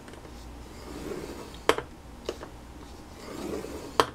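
Scoring stylus drawn along a scoreboard groove to score cardstock: a faint scraping that swells twice, with two short sharp taps near the middle.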